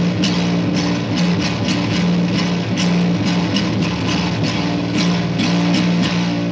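Electric bass guitar playing a repeating riff of plucked notes at an even pace, steady and loud.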